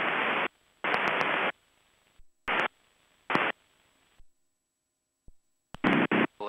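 Bursts of hiss over a Cessna 172's headset intercom, cutting in and out abruptly several times as the voice-activated squelch opens and closes on the cabin noise.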